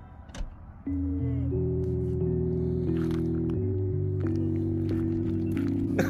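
Background music: after a brief quiet moment, sustained held chords start about a second in and shift every second or so.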